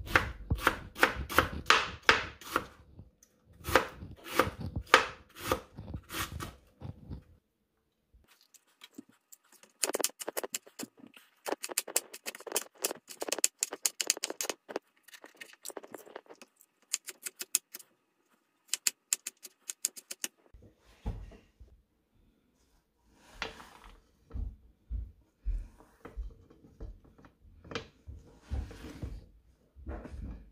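Vegetables being cut on a plastic cutting board with a knife and kitchen scissors: runs of quick, crisp cutting strokes with short pauses between. Later on, the strokes land with a duller knock on the board.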